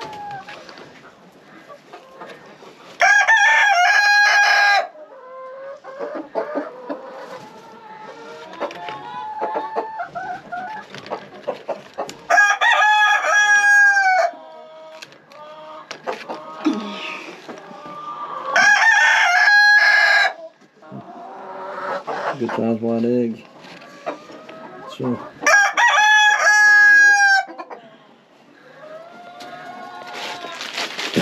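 Rooster crowing four times, each crow about two seconds long and spaced several seconds apart, with hens clucking in between.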